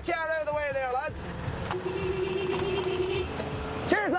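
A camper van moving off, its engine low under loud calls from people's voices in the first second and again at the end, with one steady held tone for about a second and a half in between.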